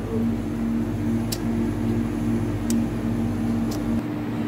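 Steady electrical hum of supermarket refrigerated display cases, several pitches held constant, with three brief faint high clicks.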